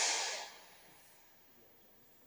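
A sudden hissing burst of noise that fades away within about half a second, leaving near-silent room tone.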